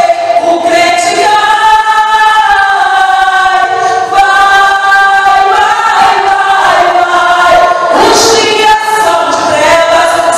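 Worship singing: voices holding long notes that glide slowly from one pitch to the next.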